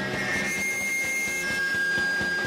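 Live lo-fi garage punk band playing loud and distorted, with steady high-pitched ringing tones over a noisy wash; the low drum hits thin out for about a second in the middle.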